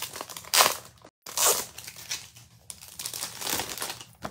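Packaging and paper crinkling and rustling as craft journals and planner pages are handled, in several loud bursts over the first second and a half, then softer rustling. A brief total gap in the sound about a second in.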